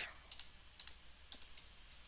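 A few faint keystrokes on a computer keyboard, irregularly spaced, as a stock ticker symbol is typed in.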